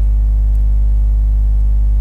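Steady electrical mains hum, a strong low drone with a ladder of higher overtones that holds level and pitch throughout.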